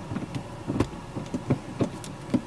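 Five-speed manual gear lever of a 2010 Nissan Grand Livina being moved through its gates, giving several short clicks and knocks.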